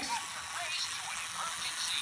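Battery-powered toy fire-engine train running along its plastic track, its small electric motor giving a steady high whir.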